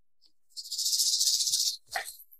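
A high, hissing rattle like a shaker, about a second long, cutting off abruptly: an edited-in transition sound effect at a scene change. A short soft knock follows just before the cut.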